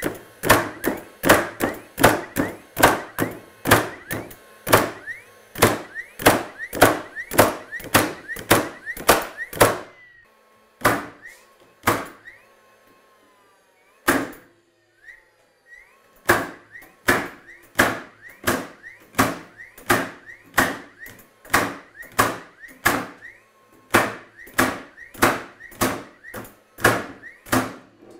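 DeWALT DCN690 20V brushless cordless framing nailer driving nails into 2x4 lumber in quick succession, about two shots a second, each sharp shot followed by a short rising whine. The run stops about ten seconds in, a few single shots follow, and a second rapid run starts about sixteen seconds in.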